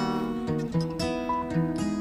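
Background music: a plucked acoustic guitar playing an even run of notes.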